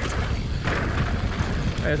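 Mountain bike riding fast down a dirt trail: tyres rolling over the packed dirt and the bike rattling over the bumps, with wind on the microphone.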